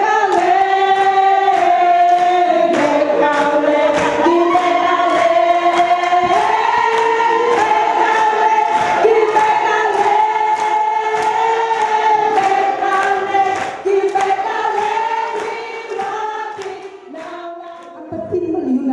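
A group of farm workers singing a song together in harmony, without instruments, over a steady beat of sharp strikes. The singing fades away toward the end.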